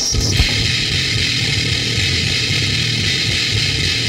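Punk/powerviolence recording: a heavily distorted chord held and ringing steadily, with the drums dropped out.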